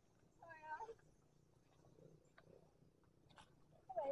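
Near silence, with one faint, brief pitched call about half a second in and a few faint ticks afterwards.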